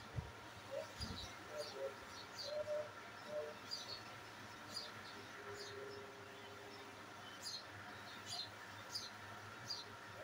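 A small bird chirping over and over: short, high, falling chirps, about one or two a second, faint against a steady background hum. A soft low thump sounds about a second in.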